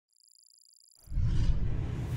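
Logo sting sound effect: faint high steady tones, then, about a second in, a sudden low rumbling whoosh that starts to fade away.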